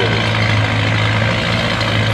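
Antique tractor engine running hard and steady under load as it pulls a weight-transfer sled, a continuous low drone.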